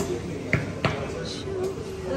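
People talking, with two sharp knocks about half a second apart near the middle.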